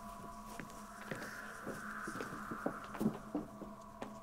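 Faint, irregular footsteps and small knocks on a stage floor over a steady low hum.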